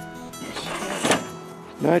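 Background acoustic guitar music, with one sharp knock about a second in.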